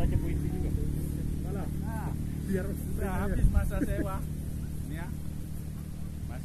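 People's voices in the background over a steady low hum.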